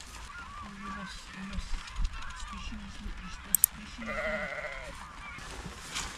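Sheep bleating: a run of short, low calls, then a longer, higher-pitched bleat about four seconds in.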